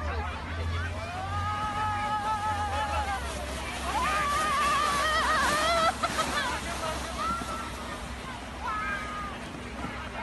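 Drawn-out, wavering shouts and squeals from people sledding down a snow slope, in two long calls over the first six seconds and a few shorter ones after, over a steady low rumble of wind on the microphone.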